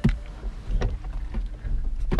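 Low wind rumble on the microphone inside a car with its door open, with a soft knock at the start and a few light knocks and rustles about a second in as people move about getting out of the car.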